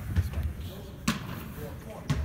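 Basketballs bouncing on a gym court in the background: two sharp thuds about a second apart, over a low, steady room rumble.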